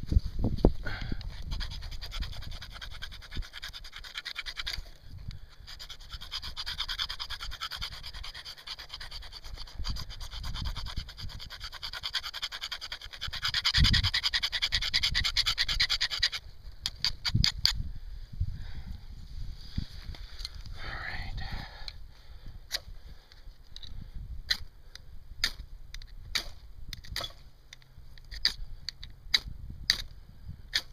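A steel knife blade scraping shavings off a magnesium fire-starter block in a fast, continuous rasp that grows loudest just before it stops about halfway through. Then comes a string of short, sharp scrapes as the blade is struck along the block's flint rod to throw sparks into the tinder.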